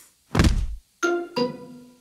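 Cartoon sound effect of a heavy thud as a character keels over flat on his back, followed about half a second later by two short descending musical notes, a comic sting.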